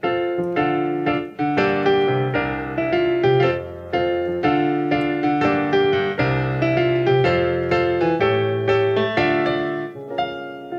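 Digital piano played solo: a flowing passage of sustained chords over held bass notes, with new notes struck a few times a second.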